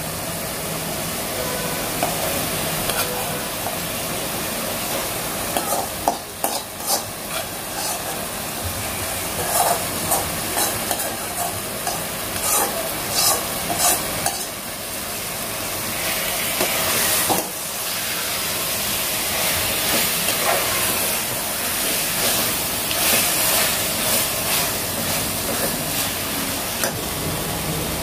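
Marinated mutton sizzling as it is scraped into hot onion-tomato masala in a pressure cooker and stirred, a steady frying hiss throughout. A steel spoon clicks and scrapes against the pan and cooker, most often in the middle stretch.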